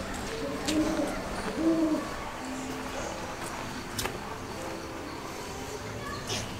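A bird's low hooting calls: two short, rounded hoots about a second apart, then a softer, flatter one. A sharp click comes partway through.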